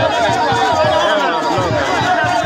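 A crowd singing and chanting Ebira masquerade songs over a quick, steady drum beat, about four beats a second, with chatter mixed in.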